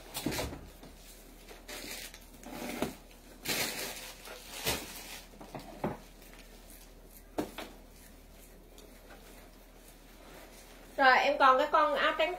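Clothes and plastic bags being handled, in a series of short rustles over the first several seconds, then a quieter stretch. A woman starts talking about a second before the end.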